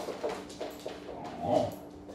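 A dog gives one short vocal sound about one and a half seconds in, the loudest sound here, among light clicks of dogs' claws on a hardwood floor.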